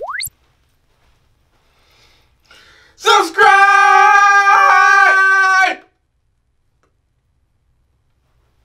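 A man's voice letting out one long, loud, high shout held on a steady note for about two and a half seconds, starting about three seconds in. At the very start, a brief whistle-like sweep rising quickly in pitch.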